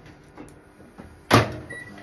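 Microwave oven door being shut with a sudden knock about a second and a half in, after a few light clicks of the popcorn maker being set inside. A short, faint keypad beep follows.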